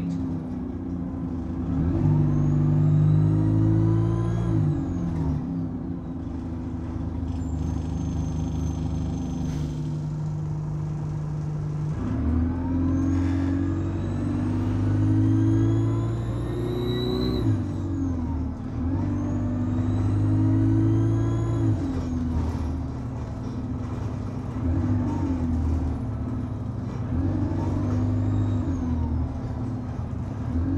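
Diesel engine and turbocharger of an Alexander Dennis Enviro200 single-deck bus, heard from inside the saloon as it accelerates and eases off four times. Each time the turbo gives a high whine that climbs in pitch while the bus pulls, for about five seconds at its longest, then falls away. This screaming turbo is the known trait of this bus, nicknamed Squealer.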